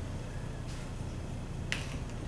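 Dry-erase marker writing on a whiteboard: faint strokes, and one sharp click near the end, over a steady low room hum.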